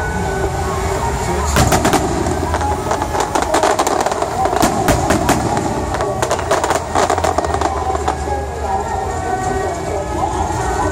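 Aerial fireworks going off: a dense, rapid run of sharp pops and bangs from bursting shells, thickest from about a second and a half to eight seconds in, over a steady low rumble.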